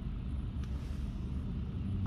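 A car's engine idling, heard from inside the cabin as a steady low rumble, with one faint tick a little over half a second in.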